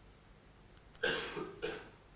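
A person coughing: two short coughs about a second in, the second quieter.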